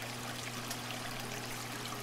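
Aquarium water trickling and splashing steadily, as from a filter's return flow, with a constant low hum underneath.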